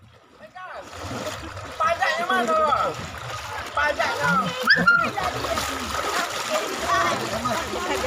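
Muddy floodwater splashing as people wade and push a bamboo raft through it, with children's voices calling and chattering over the water.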